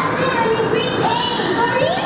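Children's high-pitched voices calling out and talking, some drawn out with rising and falling pitch, over the continuous hubbub of a busy hall.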